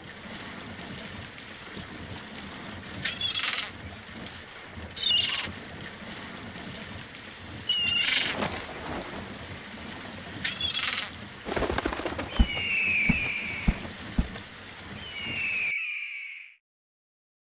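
Forest and waterfall ambience: a steady rush of water with birds chirping in four short bursts and giving falling, drawn-out calls near the end. About two thirds of the way through there is a stretch of rustling with small clicks. The sound stops abruptly just before the end.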